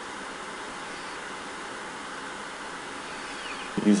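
A steady, even hiss of background noise with no distinct events in it.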